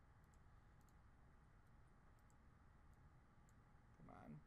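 Near silence: faint room hum with a few scattered, irregular computer mouse clicks.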